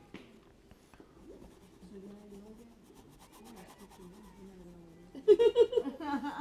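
Faint murmur of voices in a room with a few soft scratching sounds; near the end a nearby voice speaks loudly.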